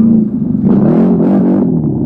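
CFMOTO CForce ATV engine revving under throttle while riding, its pitch dipping briefly, then rising and falling several times.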